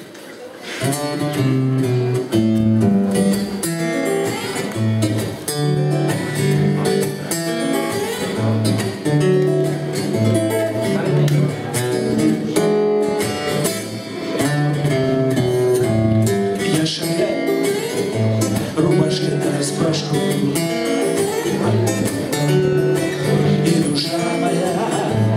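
Acoustic guitar strummed in a steady rhythm of changing chords, the instrumental lead-in to a song. It starts softly and comes in fully about a second in.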